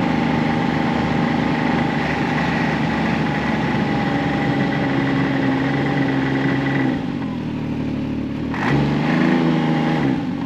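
Ski-Doo Expedition 900 SE snowmobile, its three-cylinder four-stroke engine running steadily under throttle, easing off about seven seconds in. A short blip of throttle follows as the sled slows.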